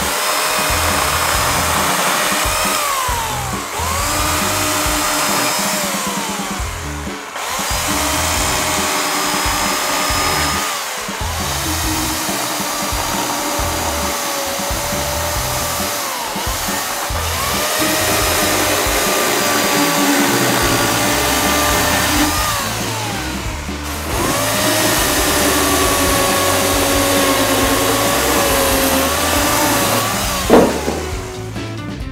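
Corded electric chainsaw cutting through a branch in about six runs of several seconds each. Its motor whine rises as the trigger is squeezed and winds down when it is released.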